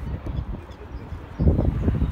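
Low, uneven rumble of wind and handling noise on a handheld microphone, louder for about half a second after the middle.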